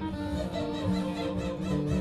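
Live acoustic folk band music, with a long held note starting about half a second in over the band's accompaniment.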